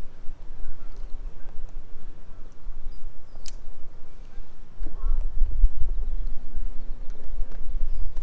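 Low rumble of wind on the microphone, heavier from about five seconds in, with a few light clicks and one sharp tick about three and a half seconds in.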